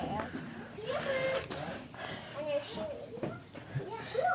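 Indistinct voices talking quietly, with a couple of light knocks.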